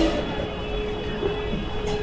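Busy street noise with one long, steady single-pitched tone, like a held horn or whistle, sounding over it for a few seconds.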